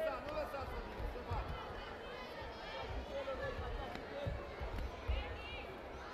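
Indistinct voices and chatter carrying in a large, echoing sports hall, with scattered low thuds, the strongest about five seconds in.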